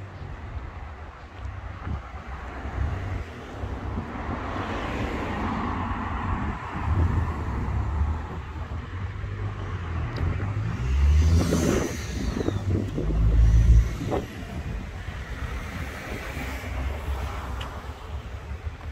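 Cars passing on a town road, one with its engine note rising as it accelerates about eleven seconds in and loudest just before fourteen seconds. Wind rumbles on the microphone throughout.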